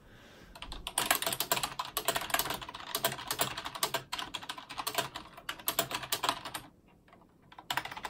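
Rapid typing on a computer keyboard, keys clicking in quick succession for several seconds, then a pause of about a second before a few more keystrokes near the end.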